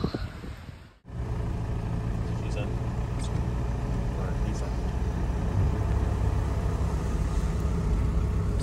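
After a cut about a second in, a 1996 Toyota HiAce's diesel engine runs steadily, a continuous low rumble heard from inside the cab.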